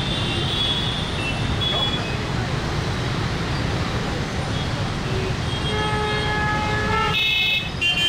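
Jammed road traffic: a steady din of idling engines, with car and motorbike horns honking. One long horn sounds about six seconds in, followed by a shriller horn near the end.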